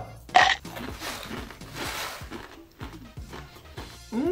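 A mouthful of crunchy dried-noodle snack (Baby Star ramen) being bitten and chewed: one sharp crunch about half a second in, then softer, irregular crunching.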